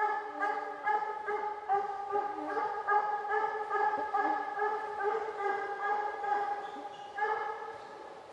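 Russian hounds baying on a hare's trail: a quick, unbroken run of drawn-out, crying yelps at a steady pitch that dies away near the end as the chase moves off.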